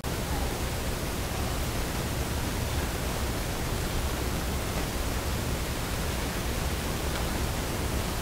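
Steady, even hiss with a low hum beneath it, and no music or voices: background noise of the room and microphone.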